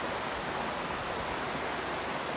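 Steady rushing of flowing stream water, an even noise with no breaks.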